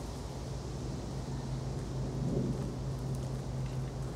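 Wind rumbling on the microphone with a steady low hum, swelling briefly a little past halfway, over a few faint crisp ticks of a Highland cow tearing and chewing grass.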